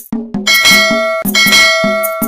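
Two bright bell chimes, the first about half a second in and the second just over a second in, each ringing on briefly, over a quick, even percussive beat. This is the notification-bell sound effect of a subscribe-button animation, set in the outro music.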